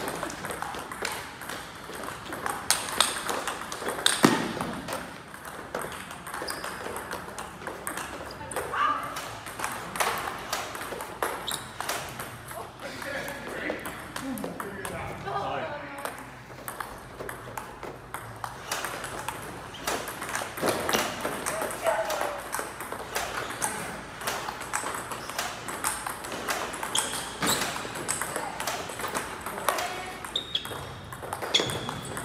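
Table tennis rallies: celluloid-style plastic balls clicking off paddles and table tops in quick, irregular succession, with people talking in the background.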